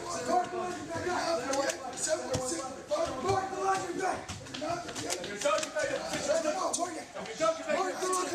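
Many men's voices shouting over one another, recruits and drill instructors, with scattered clicks and taps of gear being handled.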